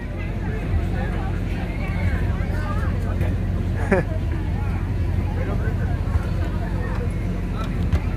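Background chatter of many people talking at once, over a steady low engine hum. One voice stands out briefly about four seconds in.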